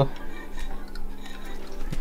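Light, scattered metallic clicks and ticks from a 20-tooth drive sprocket and chain being handled on a moped engine's crankshaft, over a faint steady hum.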